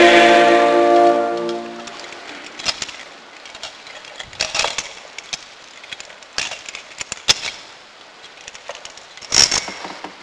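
A held sung chant chord, voices sustaining a few steady notes, fading out over the first two seconds. Then a quiet background with scattered short clicks and knocks, one a little louder near the end.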